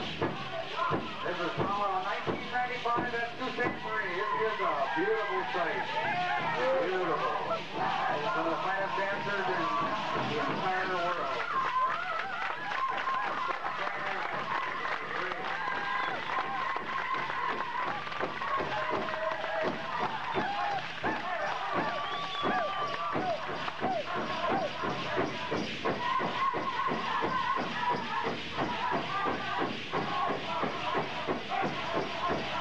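Pow wow drum group singing a grand entry song over a steady, even drumbeat on the big drum, with high, sliding voices and crowd voices around.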